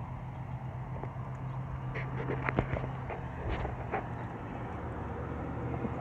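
A car engine running with a steady low hum, which softens after about three seconds. A few light clicks fall around the middle.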